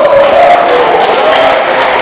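A crowd of dancers clapping and calling out as the dance tune finishes, with voices chattering among them.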